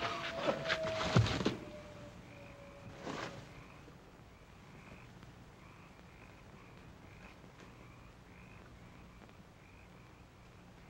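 A long howl from a hound, falling slowly in pitch and fading out over the first few seconds. Under it, sharp knocks end in a heavy thud about a second in. After that there is only faint chirping from night creatures, about two chirps a second.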